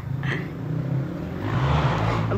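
A motor vehicle engine running steadily, a low hum, with a rush of noise building near the end.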